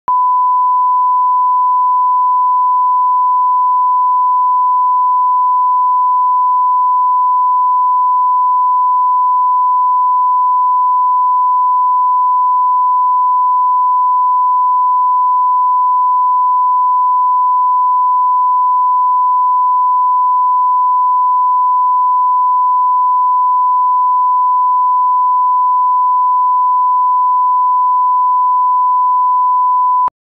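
Broadcast line-up reference tone at 1,000 hertz, played with SMPTE colour bars at the head of a programme tape: one steady, unbroken, loud beep at a single pitch.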